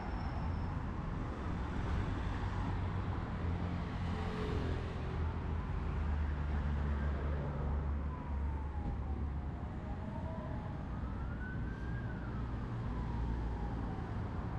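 Steady noise of heavy road traffic close by. A fainter emergency-vehicle siren wails slowly up and down behind it, clearest in the second half.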